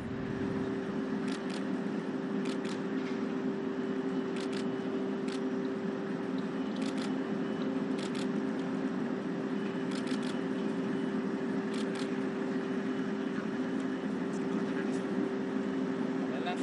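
Camera shutters clicking in quick doubles and triples every second or two, over a steady droning hum with a constant tone.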